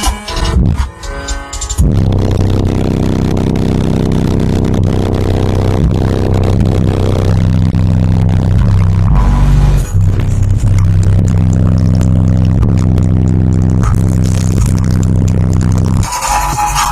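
Bass-heavy music played loud through a pair of SoundQubed HDC3 18-inch subwoofers, heard inside the truck's cabin. After about two seconds of choppy music, a deep, sustained bass line takes over.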